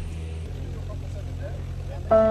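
Steady low drone of a light aircraft's piston engine and propeller heard from inside the cabin in flight, with faint voices under it.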